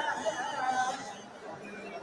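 People talking in the background, the voices fading in the second half.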